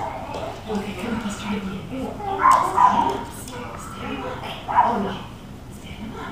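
A baby babbling with short, wordless, high-pitched calls, loudest about two and a half seconds in and again near five seconds.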